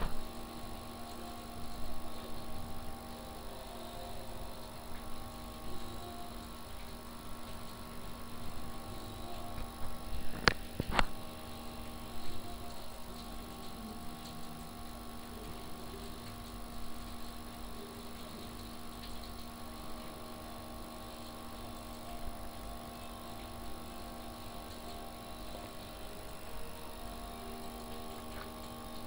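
Steady electrical hum made of several constant tones, with two sharp clicks in quick succession about ten seconds in.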